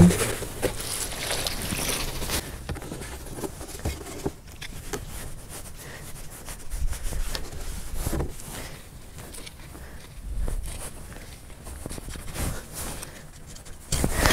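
Metal garden trowel scraping and scooping loose soil back into a watered planting hole, with intermittent soft scrapes and trickles of falling earth.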